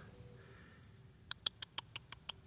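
A quick run of short, sharp clicks, about six a second, starting a little after a second in.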